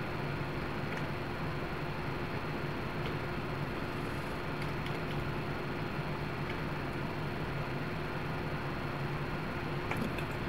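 Steady background hiss with a low hum and a faint high whine, like a fan or air conditioner running in a small room, with a few faint clicks.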